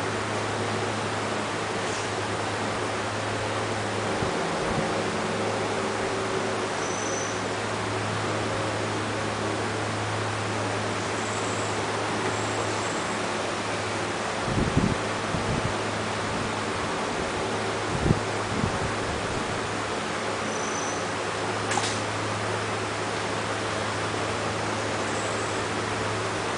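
Steady background hiss with a constant low hum, like a fan or air conditioner running, broken by a few brief soft knocks a little past the middle.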